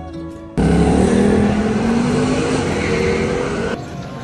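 Loud rushing wind on the microphone that cuts in suddenly about half a second in and stops abruptly just before the end, with background music underneath.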